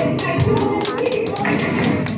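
Flamenco-style Spanish dance music playing, with a quick run of sharp percussive taps and clicks over it, densest through the middle.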